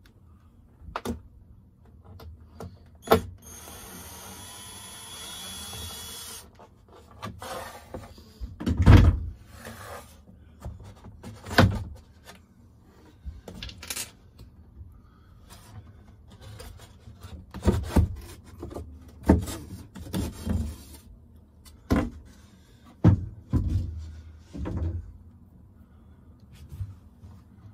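A cordless drill-driver runs for a couple of seconds, backing a screw out of a wooden cabin panel. Then comes a string of irregular knocks and clunks, the loudest about nine seconds in, as the panel is worked loose and lifted off.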